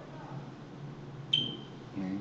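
A single short, high-pitched ping about a second and a half in, starting sharply and dying away quickly, over faint low muttering.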